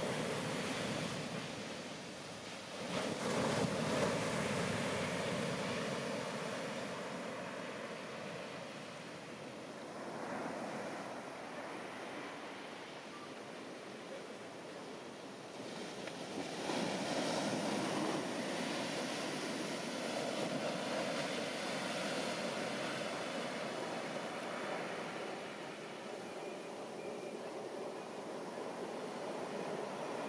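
Heavy shorebreak surf: waves crashing onto the beach and washing back, a steady rushing that swells and fades, loudest about four seconds in and again from about sixteen seconds on.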